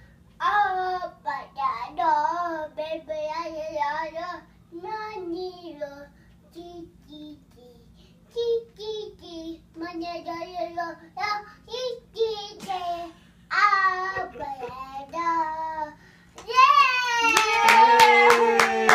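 A toddler singing alone, unaccompanied, in short phrases with brief pauses. Near the end, hand clapping starts in a quick steady beat together with a louder voice.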